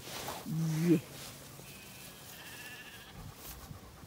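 A faint, quavering sheep bleat, lasting about a second and a half around the middle.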